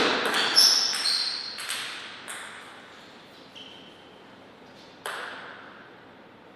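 Table tennis ball being hit and bouncing: a quick run of sharp ringing clicks off bats and table in the first two seconds, trailing off as the point ends, then one more click about five seconds in.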